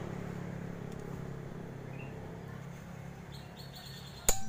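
Quiet background of a low steady hum, with short bird chirps: one about halfway through and another near the end.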